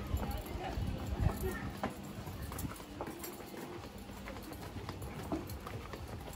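Footsteps of two people walking at an easy pace on stone-slab paving, a string of light irregular taps.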